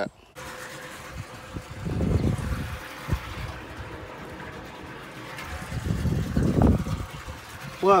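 An engine idling steadily, with two swells of low rumble, about two seconds in and again around six to seven seconds, and one sharp click about three seconds in.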